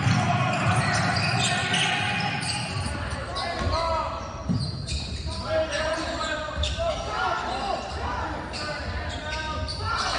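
Basketball game on a hardwood gym floor: a ball dribbling, sneakers squeaking, and players and spectators calling out, all echoing in the hall. Short squeaks come about four seconds in and again around seven seconds.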